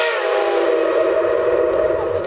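Steam locomotive's chime whistle being played with the valve worked: its chord wavers and slides down in pitch, then turns into a rough, breathy sound.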